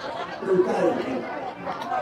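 Speech, a voice amplified through a microphone, with people chattering in the background.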